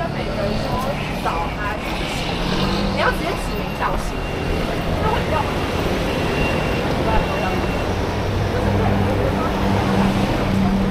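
City street traffic at an intersection: a steady rumble of car and scooter engines idling and pulling away, with faint snatches of passers-by talking. A faint high tone sounds in short pulses about halfway through.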